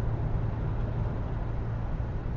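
Steady low hum of a car heard from inside the cabin.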